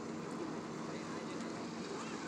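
Steady engine hum with an even hiss of wind and water behind it.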